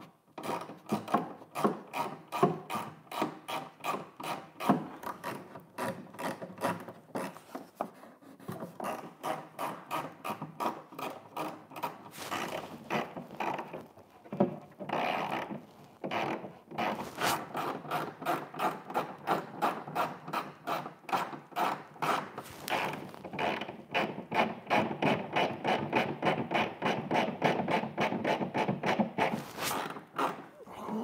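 A hand tool working a fastener into an RC jet's fuselage: a steady run of short rubbing, rasping strokes, about three or four a second, that falters briefly around the middle.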